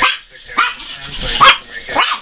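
Dogs barking in play, a few short sharp barks, the loudest about a second and a half in.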